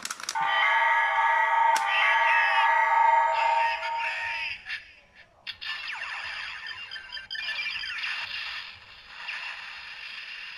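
DX Ziku-Driver toy transformation belt playing its electronic finisher sequence after being spun, with the Kuuga Ridewatch loaded for the 'Mighty Time Break' finisher. A loud synthesized jingle runs for about four seconds, then after a brief gap a second, quieter run of electronic effects follows.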